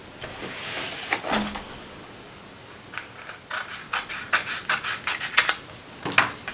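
Scissors cutting the overhanging paper away from the edge of an art journal page: paper rustling and scraping, then a run of short, sharp snips in the second half.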